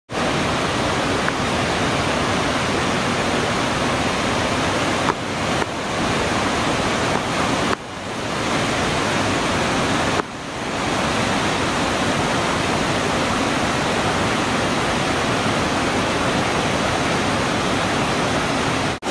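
Upper Linville Falls on the Linville River, a wide cascade over rock ledges into a pool, rushing in a steady, dense roar of falling water. There are a few brief dips in level, the clearest about eight and ten seconds in.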